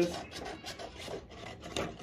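Scissors cutting through a printed transfer-paper sheet, a quick run of short snips and rasps with the paper rustling as it is handled.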